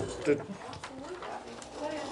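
A faint voice speaking away from the microphones in a council chamber, quieter than the close-miked speech around it.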